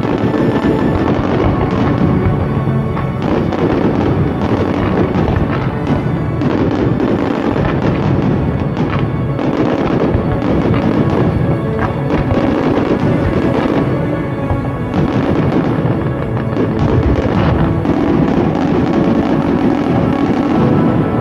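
Fireworks bursting and crackling in a dense, continuous barrage, mixed with background music.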